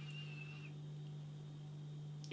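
Quiet room tone with a steady low hum, and a faint thin whistling tone during roughly the first second that dips slightly as it stops.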